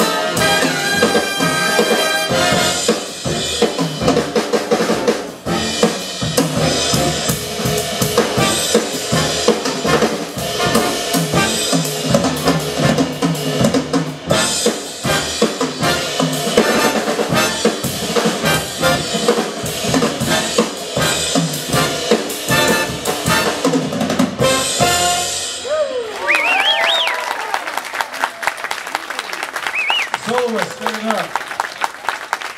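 A jazz big band playing, brass section over a drum kit with frequent hard snare and rim strokes; the tune ends about four seconds before the end, and the audience then cheers and whoops.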